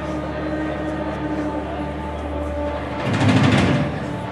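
Rock band's guitars playing live through amplifiers: a held, droning chord, with a louder, noisier swell about three seconds in.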